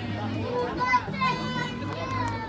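Voices calling out over background music with a steady low bass line, one loud call about a second in.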